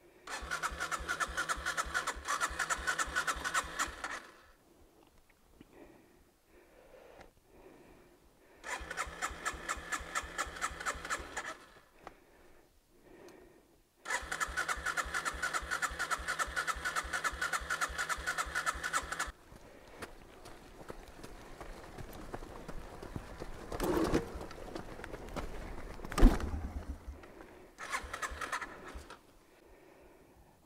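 Yamaha TW200's electric starter cranking the single-cylinder engine in three attempts of several seconds each, a fast even pulsing with a whine, without the engine catching: the bike has just been submerged, with water and fuel in its airbox. Later, a few sharp knocks.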